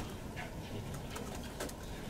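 Quiet room tone in a hall's public-address pickup: a low steady hum with a few faint clicks.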